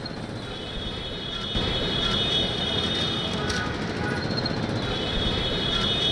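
Busy road traffic: engines of auto-rickshaws and motorbikes running as a steady rumble that grows louder about a second and a half in, with a thin high whine above it.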